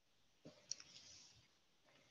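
A few faint clicks about half a second in, followed by a short soft hiss, and another small click near the end.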